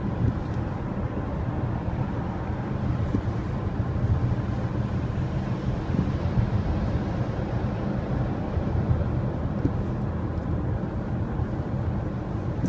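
Steady low drone of road and engine noise inside the cabin of a moving car.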